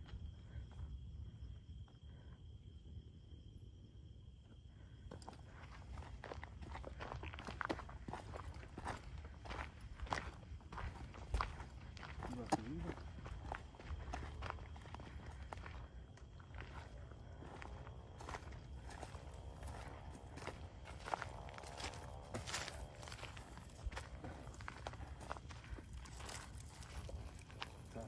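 Footsteps on dry leaf litter and twigs along a forest trail: a long run of irregular short crackles that starts about five seconds in.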